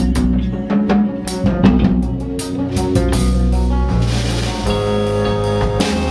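Live rock band playing an instrumental passage: a Gretsch drum kit keeping a steady beat with kick, snare and cymbals under electric guitars and bass guitar.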